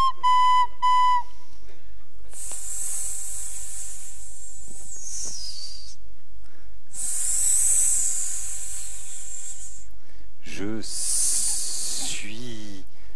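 A few short flute notes end about a second in. Then two long, high snake-like hisses follow, each three to four seconds. Near the end a wavering voice comes in, with more hissing.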